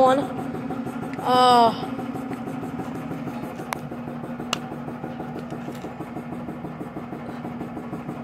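A steady low machine hum, with a short voice-like sound about a second and a half in and two faint clicks later on.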